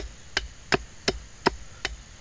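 A Cold Steel Bushman knife chopping into a wooden stick to cut a point: six sharp strikes of steel biting into wood, evenly spaced at nearly three a second, the first the loudest.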